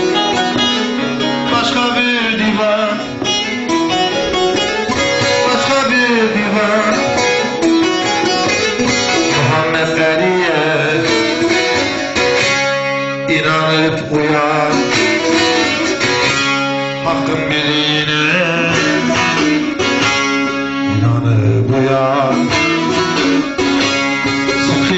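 Semah music: a bağlama (long-necked saz) played with a man singing the deyiş that the semah is danced to.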